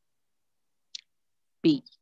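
Two quick computer-keyboard keystroke clicks about a second in, with near silence around them.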